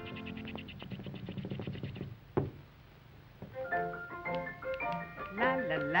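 Early-1930s cartoon orchestra score. A held chord with fast repeated notes ends in a single sharp hit, then a short near-quiet gap, and a bouncy melody of short, separate notes picks up. Near the end a voice starts singing 'la la' with a wavering pitch.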